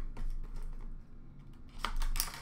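Hands peeling the plastic shrink wrap off a cardboard trading-card box: light crinkling and small clicks, with one sharper crackle near the end.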